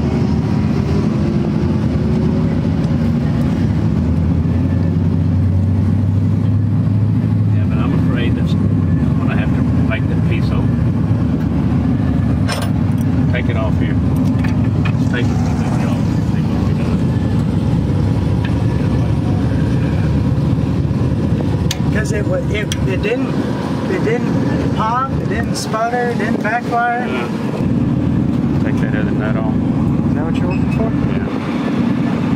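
Steady low rumble of vehicle engines running nearby, with background voices near the end and a few sharp clicks.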